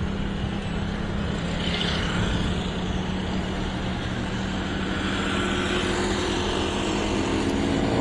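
Steady wind and road noise with a low engine hum from a motorbike riding at a steady speed; the hum fades a couple of seconds in.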